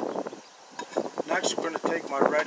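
A man talking indistinctly, with wind on the microphone; a short lull about half a second in.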